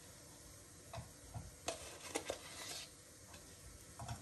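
Quiet, scattered light clicks and knocks of coffee-making things handled on a kitchen counter, mostly in the first half, with a brief soft rustle before it falls quiet.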